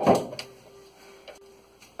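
A few faint clicks and taps in a quiet room, after a brief louder knock at the very start.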